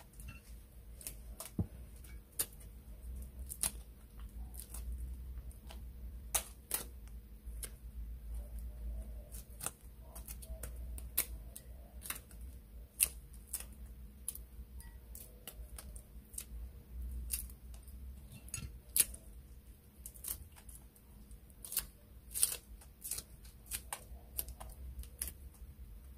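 Dried squid being torn apart by hand, with irregular crisp snaps and crackles as the dry strips split.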